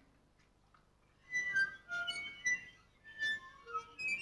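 Waterphone's metal rods sounding: after about a second of near quiet, a scatter of high ringing metallic notes at many different pitches, several overlapping and each ringing on.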